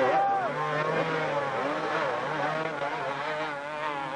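Several 250cc two-stroke motocross bikes revving hard at once, their engine notes overlapping and rising and falling, as riders bogged in deep mud spin their rear wheels.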